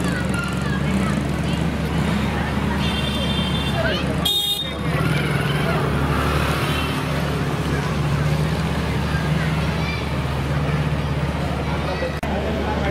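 Motorcycle and scooter engines running at low speed in street traffic, with people's voices throughout. A short horn toot sounds about three seconds in.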